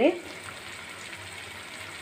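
Tempering for gongura chutney (onions, tomatoes, dried red chillies and curry leaves in oil) sizzling in a kadai, a soft, even hiss.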